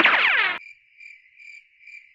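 A short descending sweep sound effect, then crickets chirping in a steady rhythm of about two chirps a second. This is the stock comic 'crickets' silence effect.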